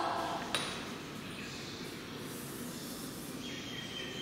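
Quiet room noise with a steady hiss, broken by a single light click or knock about half a second in; a faint thin steady tone comes in near the end.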